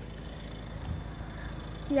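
Wind rumbling and buffeting on a phone microphone. No clear tone from the level-crossing alarm stands out.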